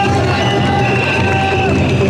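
A crowd of mikoshi bearers chanting the traditional "wasshoi, wasshoi" in a steady rhythm amid the din of a packed street crowd, with long held high notes over it.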